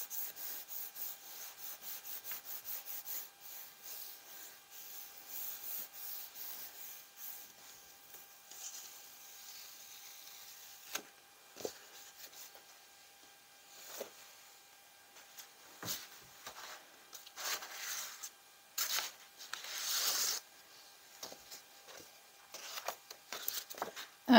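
Hands rubbing firmly over the back of a sheet of paper laid on a gel printing plate to transfer the paint, in quick repeated strokes for the first several seconds. After that comes scattered paper rustling with a few sharp taps as the printed sheet is lifted off and a fresh sheet is handled.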